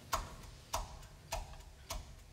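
Four sharp, evenly spaced ticks about 0.6 s apart, a steady count of four in time with the solo piano that follows.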